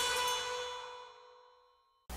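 A single ringing, chime-like note from the channel's logo intro fading away over about a second.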